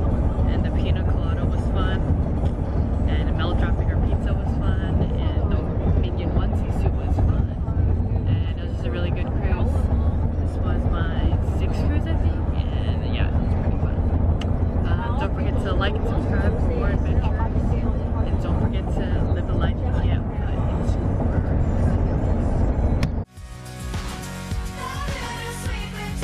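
Car cabin noise while driving: a loud, steady low rumble of road and engine noise heard from the back seat, with a woman talking over it. About a second before the end it cuts off abruptly and pop music begins.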